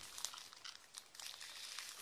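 Clear plastic bag crinkling as a packaged cross-stitch kit is handled: a soft, irregular run of small crackles.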